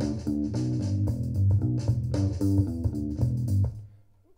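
Playback of a multitrack rock recording: a bass guitar line under a guitar part, with drums. The bass part has been copied and pasted and sits a little off the beat in some spots. The playback stops short near the end.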